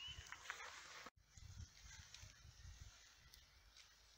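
Near silence: faint outdoor background with a low rumble, and a brief gap of total silence about a second in where the recording is cut.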